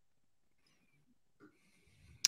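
Near silence: room tone, with one brief faint sound about one and a half seconds in.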